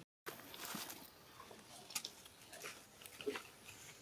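Faint crackling and sharp clicks of a baby monkey biting and chewing on a rambutan, the loudest clicks about two and three seconds in. The sound cuts out for a moment at the very start.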